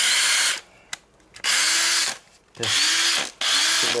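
Hilti 14.4 V cordless drill-driver running unloaded in four short bursts of about half a second each. The motor's pitch rises as it spins up and falls as the trigger is released. It is being powered from a Makita slide-in battery through a conversion adapter.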